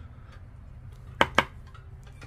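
Two quick, sharp clicks about a fifth of a second apart, a little over a second in: a poker-chip-style lottery scratcher being picked up and set against the scratch-off ticket, over a low steady hum.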